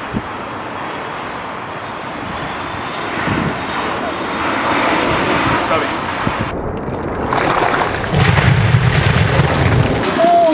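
A steady rushing background noise, then, near the end, ice water poured from two metal buckets splashing over two people and onto the roof in a loud, dense rush.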